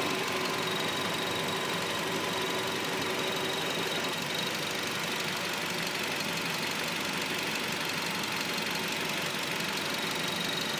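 A 2008 Ford Focus's 2.0-litre four-cylinder engine idling steadily, heard up close from above the open engine bay.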